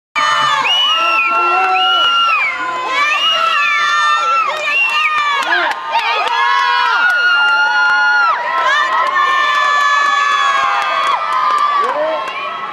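A crowd of children screaming and cheering, many high voices overlapping in long rising and falling shrieks.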